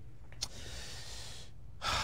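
A man breathing in audibly close to a microphone: a faint click, then a drawn-in breath of about a second, and a second shorter breath near the end.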